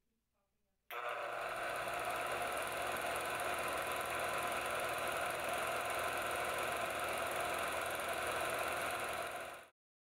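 A reel-to-reel film projector running steadily, starting suddenly about a second in and stopping just before the end.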